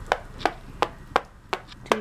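A Monopoly token tapped along the board's spaces as a move is counted out: six sharp, evenly spaced taps, about three a second.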